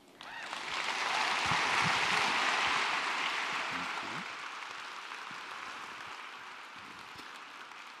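Large audience applauding, swelling within about a second and then slowly dying away.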